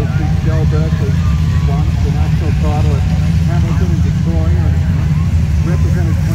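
Steady low rumble of production sedan race car engines running at parade pace, with indistinct voices talking over it.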